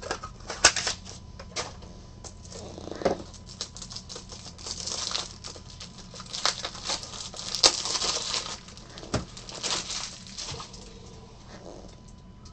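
Trading cards and plastic card sleeves and holders being handled: rustling and crinkling broken by many light clicks and taps, with the busiest rustling in the second half.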